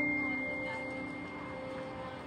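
Soft background score: a high bell-like note rings on and slowly fades over low, sustained held notes.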